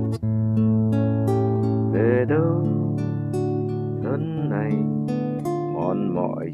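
Acoustic guitar accompaniment in A major, strummed in a steady rhythm with ringing chords. A man's singing voice comes in briefly three times, about two seconds apart, over the guitar.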